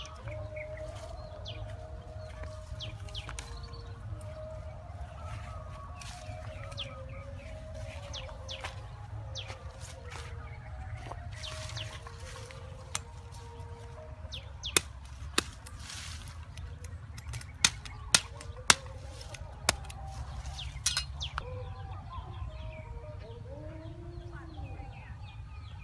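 Meat cleaver knocking and chopping on thin green bamboo sticks: about eight sharp, irregular knocks in the second half. Birds chirp over a steady low rumble.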